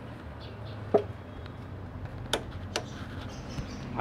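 Click-type torque wrench giving one sharp click about a second in, the sign that the brake pad pin has reached its set 15 N·m, then two lighter metallic ticks from tools being handled, over a low steady hum.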